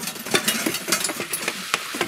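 Kitchen work: an irregular run of sharp clicks and knocks from utensils on dishes or a pan, over a steady hiss.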